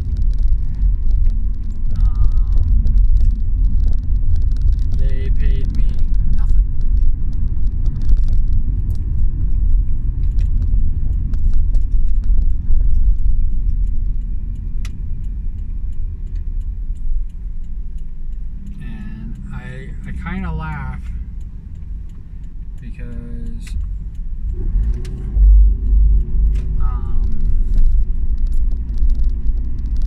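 Steady low rumble of a car's engine and tyres, heard from inside the cabin while driving. It eases off a little partway through, and a brief voice-like sound comes about two-thirds of the way in.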